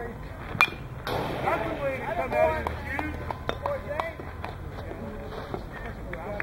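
A single sharp crack of a bat meeting a pitched baseball about half a second in, followed by several voices shouting and calling out.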